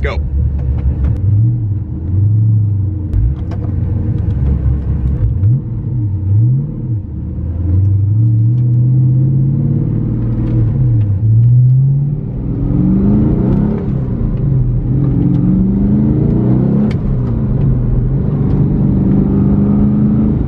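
LS3 V8-swapped Porsche 911 accelerating and shifting, heard from inside the cabin. The engine note climbs and drops back several times as it pulls through the gears.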